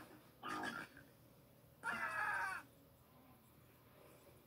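Two short, high, voice-like cries, the second louder and longer with a wavering pitch.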